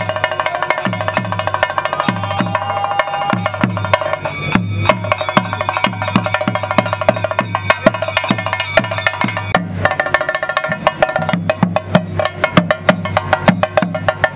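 Percussion-led music: regular low drum strokes about twice a second under a sustained pitched melody line, which drops out briefly about four and a half seconds in. From about ten seconds in, sharp high strokes crowd in more densely over the drums.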